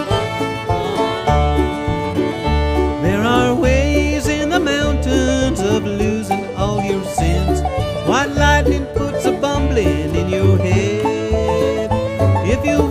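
Instrumental break of a bluegrass mountain-music song: banjo and guitar picking over a steady low bass pulse, with a lead line of sliding notes entering about three seconds in.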